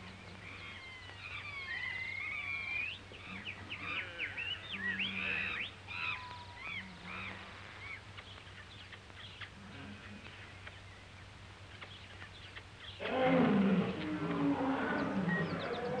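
Jungle sound effects on an old film soundtrack: many chirping, whistling bird calls over a faint steady hum, then from about three quarters of the way in a louder animal roar and growling.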